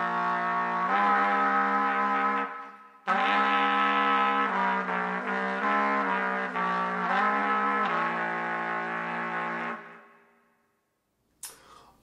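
Piccolo trumpet played in its lowest register, pedal tones with multiphonics. Two phrases of held low notes: the first breaks off about two and a half seconds in, and the second steps through several notes before fading out near the ten-second mark.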